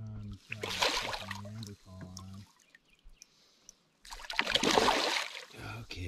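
A hooked fish splashing and thrashing at the water's surface beside a canoe, in two bursts: one about a second in and a longer one from about four seconds in.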